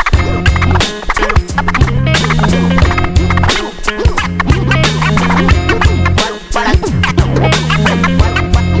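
Hip hop beat without vocals: a drum pattern with a stepping bass line, with turntable scratching over it.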